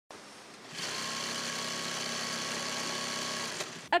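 Industrial sewing machine running steadily, its needle stitching fabric; it speeds up about three-quarters of a second in and stops shortly before the end.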